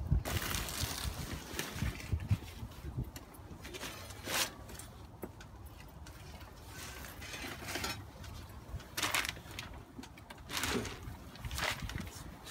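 Plastic protective sheeting rustling and crinkling in irregular bursts as it is handled and pulled back off the concrete.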